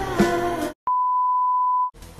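Background music that stops short less than a second in, then a single steady electronic beep, one pure high tone held for about a second and cut off sharply.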